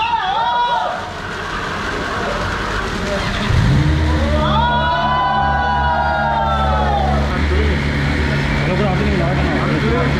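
BMW S1000RR inline-four engine starting a little over three seconds in, then idling steadily.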